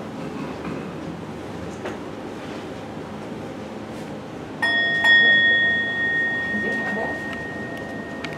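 A singing bowl (meditation bell) struck about halfway in, with a second, louder stroke half a second later, then ringing on with a long, slowly fading tone. Before it, only faint room noise.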